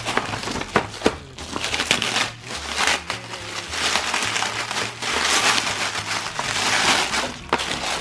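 Crinkly gold metallic gift-wrapping paper being pulled open and crumpled by hand, a dense, irregular crackling and rustling that goes on throughout.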